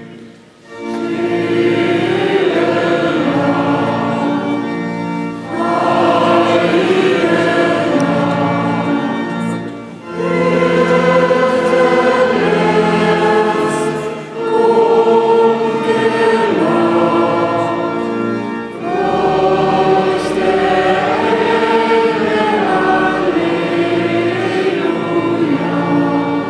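A choir singing a Christmas hymn in several-part harmony, in phrases of about four to five seconds with short breaks for breath between them.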